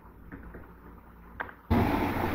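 Pause in a voice recording: faint room noise with a small click about one and a half seconds in. A louder, steady background hiss cuts in suddenly near the end.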